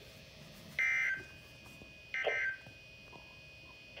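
Two short, shrill bursts of SAME digital data tones from Midland NOAA weather alert radios, about a second and a half apart, each under half a second long. They are the end-of-message code that closes the flash flood warning broadcast.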